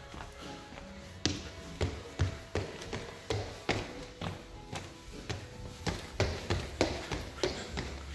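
Footsteps climbing a staircase: a steady run of footfalls, about two or three a second, starting about a second in. Quiet music plays in the background.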